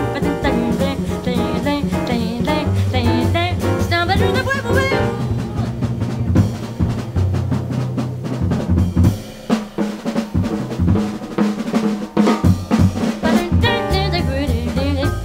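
Live small-group jazz: a wavering vocal line over upright bass and drums for the first few seconds, then a drum kit solo break of snare, cymbal and bass-drum strokes under low bass notes, with the melody coming back in near the end.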